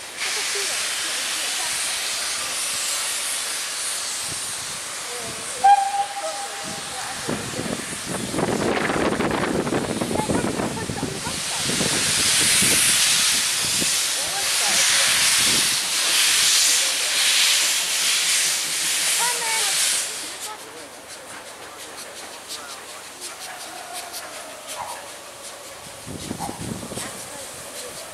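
Polish Slask class 0-8-0T steam tank locomotive letting off steam in a loud hiss, with one short whistle blast about six seconds in. The hiss swells again and then cuts off suddenly about twenty seconds in, leaving the engine quieter as it draws near.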